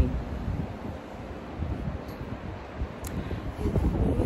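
Wind buffeting the microphone: a low, uneven rumble with a faint rustle above it.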